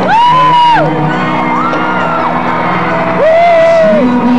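Live rock concert sound with the band playing as audience members close by let out three long, high whoops over the music: one at the start, one about halfway, one near the end.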